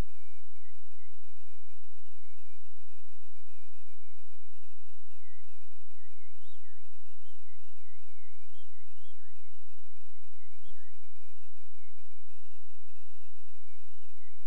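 A single thin, high-pitched whine that holds steady and wavers irregularly up and down in pitch, swinging more widely in the middle.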